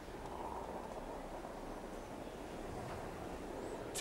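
Curling stone sliding down the sheet after delivery, a steady low rumbling hiss heard over arena background noise.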